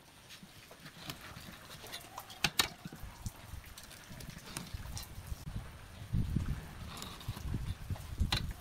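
Scattered light taps and knocks as a steel try square and a pen are set down and moved on pine boards while marking out cuts, with a few duller low thuds near the end.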